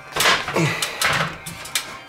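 Knocks and clunks from someone climbing a metal loft ladder, with a man's short groaning "oh" about half a second in.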